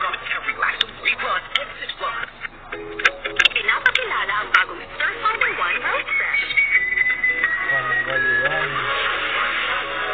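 Television commercial soundtrack: a voice over background music, with several sharp clicks in the first half. From about six seconds in, the music carries on with long held notes.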